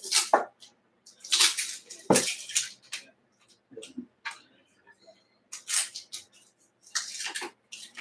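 A run of short, irregular handling noises: light clicks, taps and brief scuffs of small hard objects, about a dozen spread unevenly, with a sharper click about two seconds in.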